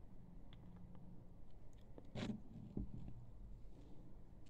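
Quiet close-up handling noise: a few faint clicks and rustles, with one short soft noise about two seconds in.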